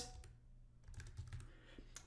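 Faint typing on a computer keyboard: a short run of keystrokes.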